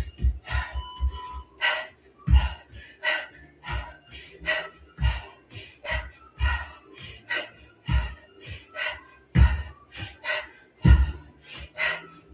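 Bare feet thudding on an exercise mat over a wooden floor. The thuds come quickly at first, then slow to about one every second and a half as repeated front kicks land. Background workout music with a steady beat plays over them.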